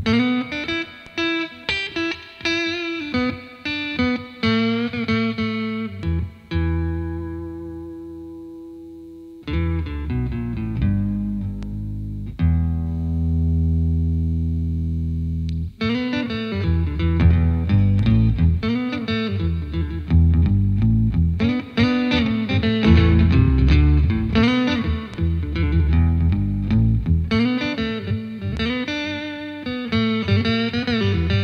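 Electric guitar played through an Electro-Harmonix Bass 9 octave pedal on its Split Bass setting: the low strings sound as bass notes under guitar lines on the high strings. The picked playing is busy, and twice it settles on a long held chord, about six seconds in and again about twelve seconds in, before the busy lines resume.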